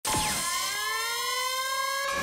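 A trailer sound effect: a sustained tone of several pitches that starts abruptly and glides slowly upward, siren-like.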